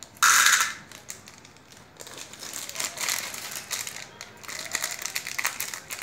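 A foil candy packet of Cadbury Gems torn open in one sharp rip about a quarter second in, then the wrapper crinkling and crackling in the hands, with small clicks, for the rest of the time.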